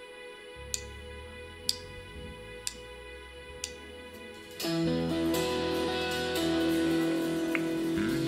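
Church band starting a song: a held chord with four sharp clicks about a second apart, like a count-in, then the full band comes in about four and a half seconds in, much louder.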